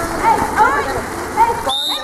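Spectators shouting over a steady wash of splashing pool water. Near the end a short, high referee's whistle blows, calling a foul.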